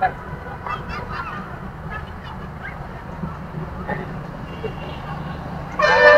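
Outdoor background: a steady low rumble with faint, distant voices. Just before the end a loud, held tone with strong overtones starts.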